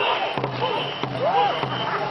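Ngo longboat crew paddling in unison: regular thumps about one and a half a second, with shouted voices keeping the stroke.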